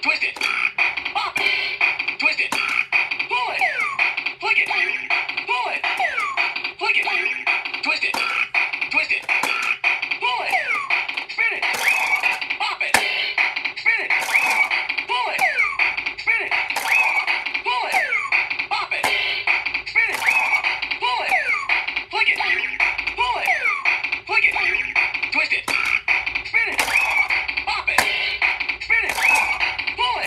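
Bop It Extreme toy playing its electronic beat through its small tinny speaker, with quick spoken commands and short sliding sound effects answering each twist, flick and spin in a fast game.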